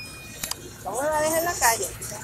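A high-pitched voice speaks briefly, without clear words, from about a second in. Before it come the fading ring of an electronic chime and a sharp click, sound effects of an on-screen subscribe-button animation.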